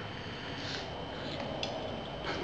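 A twist-off cap is turned off a glass beer bottle by hand: light clicks of the cap coming free, and only a faint hiss of gas, barely any fizz.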